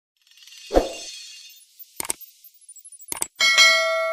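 Subscribe-button animation sound effects: a rushing swell with a low hit, then clicks, then a bell-like ding that rings on and slowly fades.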